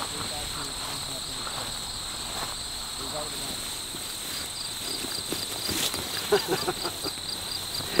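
Crickets trilling steadily, one continuous high note. About halfway in, a second insect joins with a regular pulsing chirp, roughly four pulses a second.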